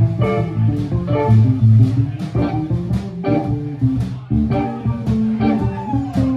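Live Chicago blues band playing an instrumental passage: electric guitars and electric bass over drums, with a steady beat.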